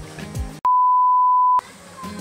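An edited-in bleep: a single steady, high electronic tone about a second long that starts about half a second in, with all other sound cut out beneath it. Before and after it, background music with a beat.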